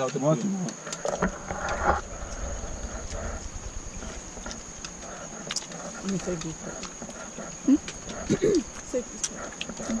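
A steady, high-pitched insect drone, with brief snatches of people's voices near the start and again in the second half.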